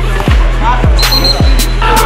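Background music with a steady beat: a deep kick drum hitting a little under twice a second over a held bass note, with cymbal hits on top.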